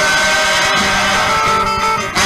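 Live samba band playing on between sung lines: plucked strings and a hand-played pandeiro, with a chord held steady through the moment.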